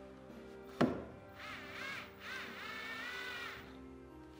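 Cordless drill-driver whining in two short runs, its pitch wavering as it drives a screw into a wooden batten, with a sharp click about a second in. Background music plays under it.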